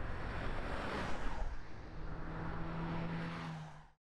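Road traffic: vehicles driving past on asphalt, tyre and engine noise, with a steady low engine hum in the second half, fading out just before the end.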